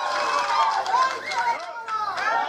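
Only speech: a man talking steadily into a microphone over a public-address system.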